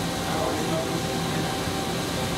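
Steady whirring machine-shop noise from running machinery, with a faint constant tone through it.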